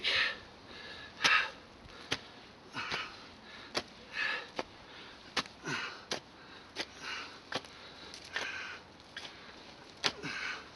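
A long-handled garden tool scraping and digging through loose soil to cut a trench. It makes short scrapes with sharp clicks of the blade about once a second.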